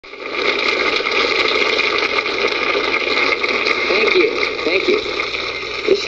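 Audience applauding steadily, the clapping swelling in just after the start, with a few voices calling out about two-thirds of the way through.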